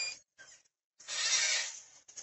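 A short click, then about a second in a soft rush of breath drawn in by the speaker, lasting under a second, ahead of her next words.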